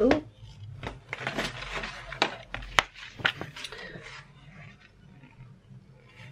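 Rolled paper dust jacket being unrolled and handled, crackling and rustling, with several sharp crinkles in the first few seconds before it goes quieter.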